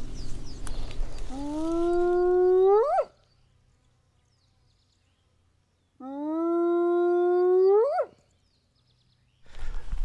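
Two long whoops of a spotted hyena, the second beginning about six seconds in. Each holds a steady low pitch, then sweeps sharply up at the end and cuts off into dead silence. A rustle of wind and grass comes before the first call.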